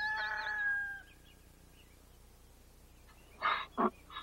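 A rooster crowing: one long call on a steady note that stops about a second in. Near the end, two short breathy snorts from a horse.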